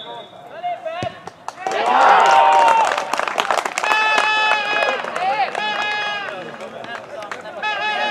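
A football struck once for a penalty kick, a single thud about a second in, then the players shouting and yelling loudly as the penalty goes in for a goal.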